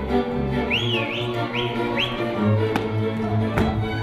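Hungarian folk dance music led by fiddles over a low string bass. About a second in, four quick rising whistled notes sound over it, and there are two sharp clacks near the end.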